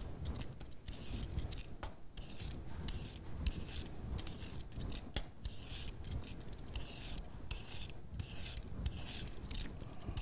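Hand vegetable peeler scraping the skin off a cucumber in repeated short strokes, taking off the bitter outer peel.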